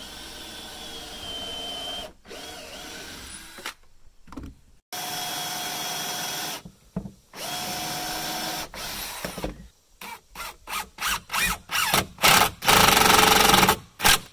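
Cordless drill/driver fastening a hardwood tomato-stake brace, its motor whining in several runs of a second or two. Then comes a quick string of short trigger pulses, ending in one long, loudest run near the end.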